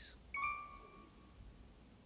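A single chime note struck once, ringing clearly and fading away within about a second.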